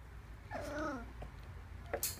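A three-week-old whippet puppy gives one short whine, about half a second in, that wavers and falls in pitch.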